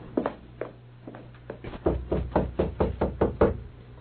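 Radio-drama sound effect of knocking on a door: a few single raps, then a quick, even run of raps from about two seconds in.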